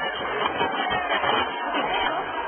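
Several voices talking and calling out over one another, a continuous jumble of speech with no single clear speaker, sounding thin and muffled as from an old, low-quality television recording.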